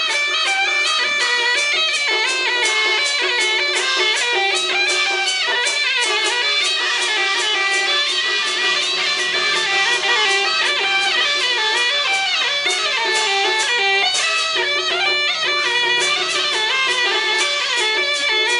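Taiwanese opera band playing instrumental accompaniment: a plucked-string melody with a bowed fiddle over a steady beat, without singing.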